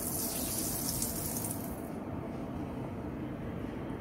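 Water pouring from a plastic jug into the metal chamber of a top-loading autoclave: a steady pour that softens after about two seconds. This is the autoclave being filled with water before a sterilisation run.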